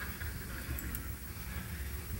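Quiet room tone of a hall picked up through the talk microphone, a steady low hum with a few faint clicks.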